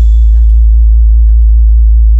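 A loud, pure, very deep bass tone held steady: the bass test note of a DJ sound-check remix.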